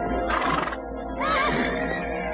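A cartoon horse whinnying: a wavering, high call in the second half, with a short noisy burst just before, over background music.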